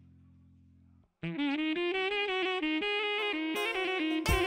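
A faint low hum for about a second, then, after a brief gap, live band music starts: a fast solo melody line in a reedy, saxophone-like tone, running through quick notes with no drums yet.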